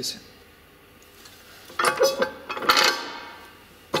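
Metallic clinking and clatter from the steel filling head and frame of a manual aerosol-can paint filling machine as it is handled and set onto a spray can. It comes in two short bursts, about two and about three seconds in, after a quiet start, with a sharp click at the end.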